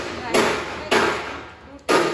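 Several loud, sudden bursts of laughter, each fading off before the next.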